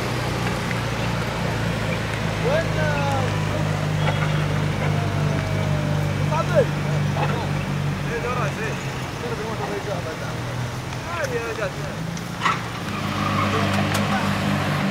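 SUV engine running at steady revs as the vehicle is driven balanced on two wheels, with scattered short calls from voices over it and a sharp click about halfway through.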